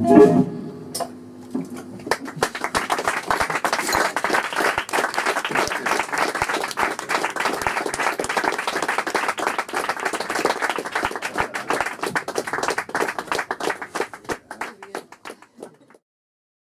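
The last held note of saxophones and voice cuts off, and after a short pause a small club audience applauds, the clapping thinning out and dying away near the end.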